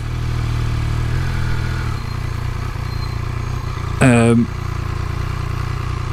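Triumph Speed Triple 1200 RS's three-cylinder engine running steadily at low speed while the bike closes up on slowing traffic; its note drops a little about two seconds in. A brief vocal sound comes about four seconds in.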